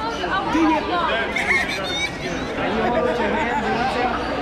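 Speech only: several people talking and chattering over one another.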